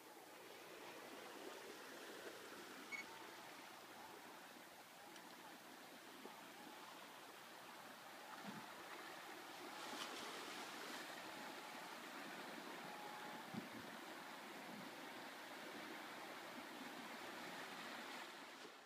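Faint outdoor ambience: a soft, even hiss of calm sea washing gently against a rocky shore, a little louder about halfway through, with a few light knocks.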